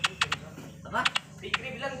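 Caged cucak pantai, a Papuan honeyeater, calling with short, sharp, high notes that each sweep downward, given in quick clusters: several in the first half-second and more about a second in.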